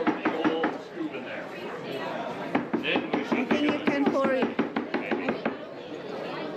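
Voices of people talking around a craft booth, with a quick run of sharp knocks, about four a second, that stops within the first second.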